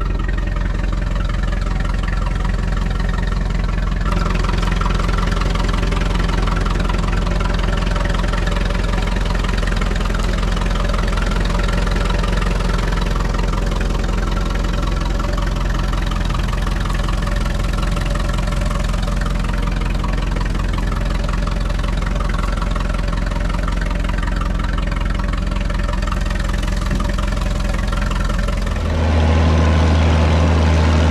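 A vintage tractor engine runs steadily, heard close up while it tows a trailed disc harrow. About a second before the end the sound changes to a louder, deeper engine: the Massey Ferguson 3690 tractor pulling a plough.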